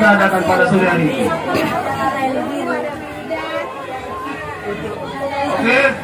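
A crowd chattering: several people talking at once, with overlapping voices.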